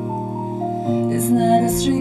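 Instrumental backing track of a slow pop ballad, holding sustained chords between sung lines.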